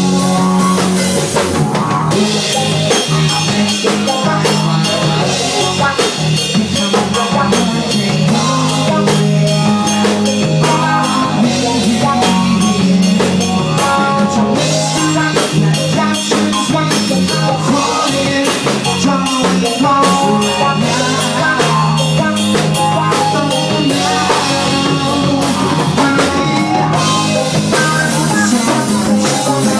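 Live rock band playing loud and steady, with a regular drum-kit beat, guitar and bass, and a male singer's voice at the microphone.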